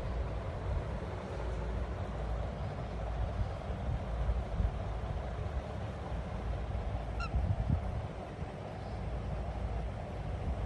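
A single short cockatiel chirp about seven seconds in, over a steady low rumble with a few soft bumps.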